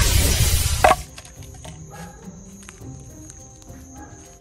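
A loud rushing whoosh, a magic-transport sound effect, for about the first second, then soft background music.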